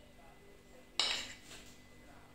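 A metal teaspoon clinks sharply against a ceramic plate about a second in, ringing briefly, with a fainter clink just after.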